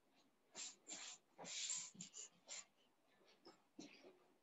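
Faint short bursts of rustling and scraping as a wicker chair is picked up and moved, about six of them in the first two and a half seconds, then a few smaller knocks.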